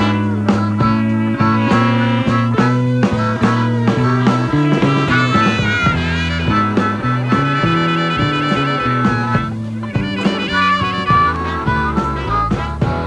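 Live blues band playing an up-tempo number: drums and a walking bass line under electric guitar, with tambourine and harmonica; a long held high note in the middle.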